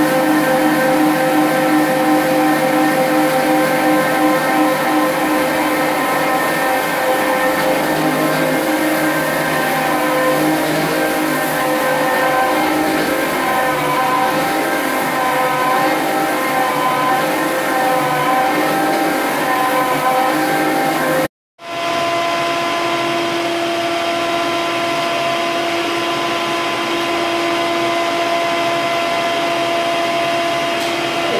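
Single-disc rotary floor machine sanding an old solid-wood parquet floor, its motor humming steadily. About two-thirds of the way in the sound cuts off for a moment and a wet-dry canister vacuum cleaner takes over, running with a steady hum.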